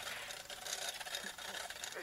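Faint, steady outdoor background noise with no distinct event: a pause between spoken sentences.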